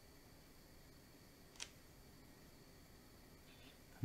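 Near silence: quiet room tone, with a single brief click about a second and a half in.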